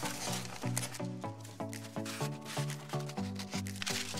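Background music of short pitched notes in a steady rhythm, about four a second.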